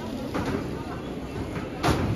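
Busy airport terminal hall: steady background hubbub with faint voices, and one sharp knock near the end.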